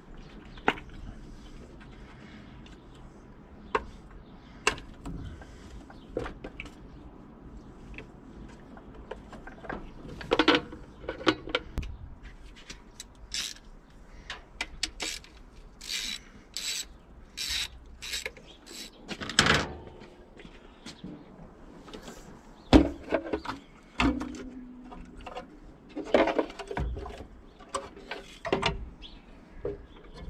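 Hand-tool work on a 318 V8's top end: a run of short ratchet-wrench strokes in the middle, among scattered clicks, rubs and metal clanks of parts being pulled and set down.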